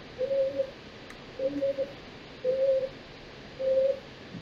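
A bird cooing: four short, low, even-pitched calls about a second apart.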